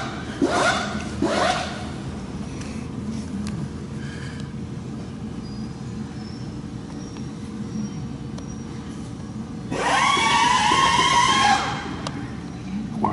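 Low steady background noise, then about ten seconds in a loud whine from a small electric motor, holding a steady pitch for about two seconds before it stops.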